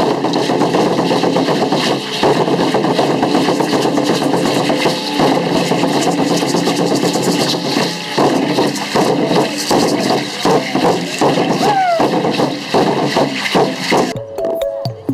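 Drumming for an Aztec-style (Mexica) dance group, a dense run of strikes with a clatter of rattling on top, and crowd voices mixed in.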